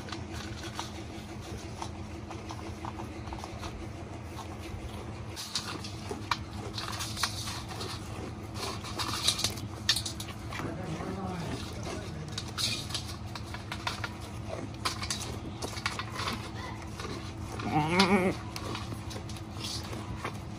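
Goat eating Oreo biscuits from a metal bowl: scattered crunching and licking clicks, then one short wavering goat bleat near the end, over a steady low hum.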